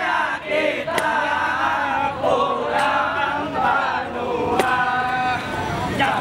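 A group of voices singing in chorus, with a sharp hit roughly every two seconds.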